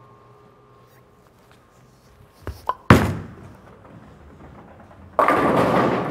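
A Brunswick Hitter Pearl bowling ball is released and lands on the lane with a loud thunk about three seconds in. It rolls down the lane with a low rumble, then hits the pins with a sudden crash a little after five seconds in, a strike.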